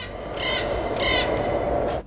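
Forest ambience: a bird calls twice, about half a second and a second in, over a steady hiss of background noise, which then cuts off suddenly.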